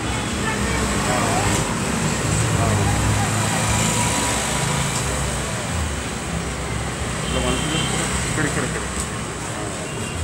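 Indistinct voices over a steady low rumble of road traffic.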